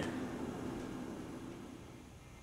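Quiet room tone: a faint steady hiss that slowly fades, with no distinct sound in it.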